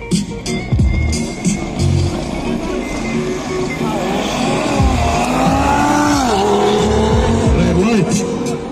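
A Porsche Panamera and an Audi RS3 launching side by side on a drag strip, engines climbing in pitch under full acceleration from about four seconds in, with a sharp drop at a gear change near six seconds before climbing again. Hip hop music with a heavy bass beat plays over it.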